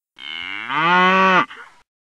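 A single long cow moo that swells and rises in pitch, then breaks off abruptly, followed by a brief fainter trailing sound.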